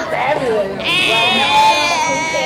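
Several people talking at once, with one high voice holding a long, drawn-out sound from about a second in.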